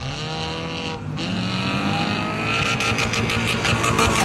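A car engine revving hard as the car accelerates away: the engine note rises, dips about a second in, then climbs again. A growing patter of clicks joins it near the end.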